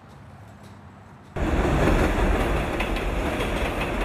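Subway train running past, starting abruptly about a second in, loud and dense with a heavy low rumble, after faint outdoor background.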